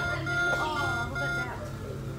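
Laser maze game's electronic beeper sounding a run of short, high beeps at one pitch, about three a second, stopping about one and a half seconds in, over people talking.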